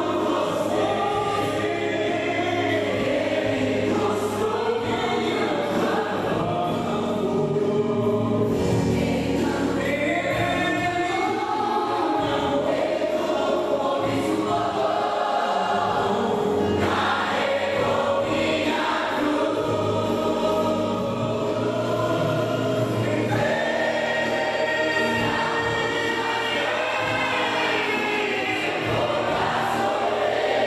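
Mixed choir of men and women singing a gospel song in sustained, flowing lines.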